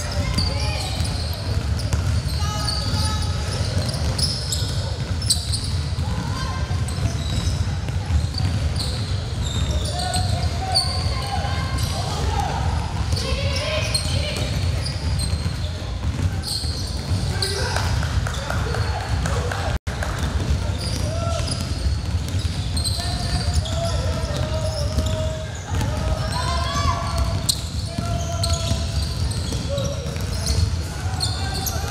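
Sound of a basketball game in a large gym: a ball bouncing on the hardwood court under players' calls and shouts, all echoing in the hall. A brief dropout about two-thirds of the way through.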